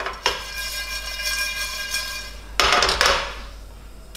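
A metal spoon knocks against a stainless steel frying pan, and the pan rings for about two seconds. Green cardamom pods then rattle and scrape across the dry pan in a short burst as they are stirred during toasting.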